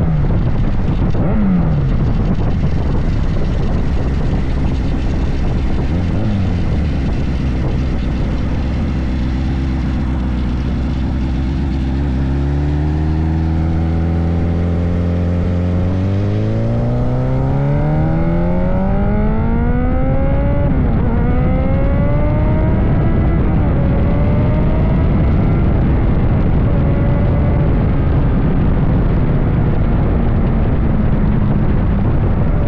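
Sport motorcycle engine on the move. It holds a steady pitch for several seconds, then accelerates from about halfway through, its pitch rising with a few gear changes, over a constant rush of wind.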